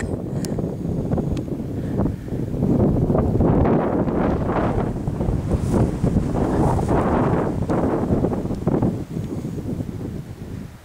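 Wind buffeting a camcorder's microphone: a loud, uneven rumble that swells and eases in gusts.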